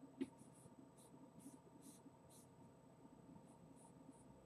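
Faint scratching of a vine charcoal stick on drawing paper in short shading strokes, about two a second, with a light tap just after the start.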